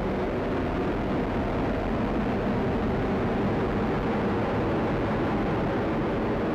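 Atlas V rocket in powered climb, its RD-180 main engine and four solid rocket boosters firing: a steady, unbroken exhaust noise heard from the ground, strongest in the low and middle range.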